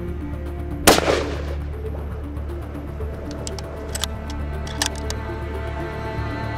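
A single .375 H&H rifle shot about a second in, sharp with a short ringing tail, over steady background music.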